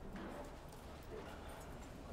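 Faint, indistinct voices in the background with scattered light clicks and taps.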